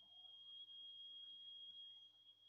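Near silence: room tone with a faint, steady high-pitched whine and a faint low hum.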